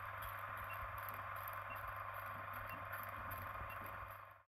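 Faint old-film projector sound effect: a steady hiss and low hum with faint ticks about once a second.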